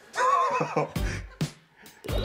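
Comic edited-in sound effect of a neigh, a pitched whinnying call lasting most of a second, followed by a low thump and a short click.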